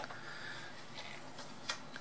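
Plastic ladder turntable of a Bruder Scania toy fire truck being turned by hand: a few faint plastic clicks, the sharpest near the end.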